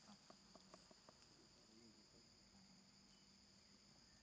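Faint, steady high-pitched drone of forest insects, with a few light clicks in the first second.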